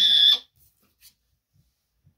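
A boy's brief, high-pitched squeal that cuts off about half a second in, followed by a few faint soft clicks.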